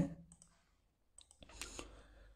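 A short cluster of faint computer mouse clicks about one and a half seconds in.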